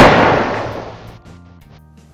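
A loud bang with a long echoing decay that dies away over about a second, under faint background music that fades out.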